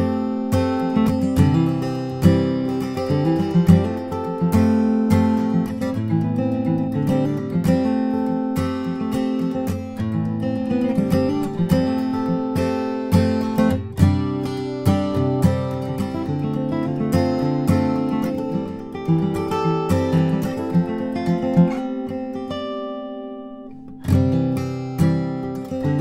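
Bourgeois DB Signature dreadnought acoustic guitar, with an Adirondack spruce top and Madagascar rosewood back and sides, played with a mix of picked notes and strums. Near the end a chord is left to ring out and fade for about a second and a half, then the playing starts again.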